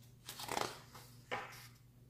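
Paper pages of a large art book being turned by hand: two short papery rustles about a second apart.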